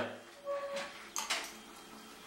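Mostly quiet room with small sounds of people taking spoonfuls of ground cinnamon: a faint muffled noise about half a second in, and a short, sharp, hissy sound just after a second in.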